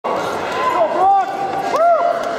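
People talking in a large hall, several voices rising and falling in pitch over a dense background of chatter.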